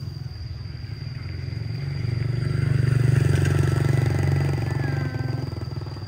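A vehicle engine passing by, growing louder to a peak about halfway through and then fading away.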